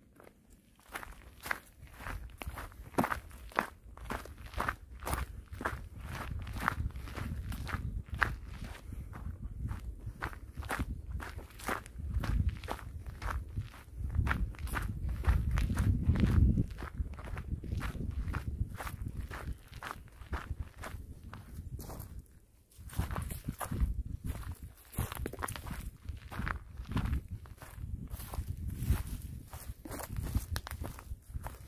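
Footsteps walking at a steady pace, about two steps a second, on a dirt forest trail strewn with dry needles, leaves and twigs, over a low rumble. The steps stop briefly about two-thirds of the way through, then carry on.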